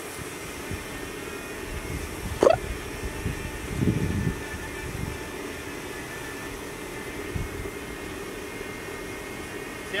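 Small DJI Mini 2 quadcopter drone hovering, its propellers giving a steady hum. About two and a half seconds in, a short, sharp rising chirp is the loudest sound, followed by a low rumble about a second later.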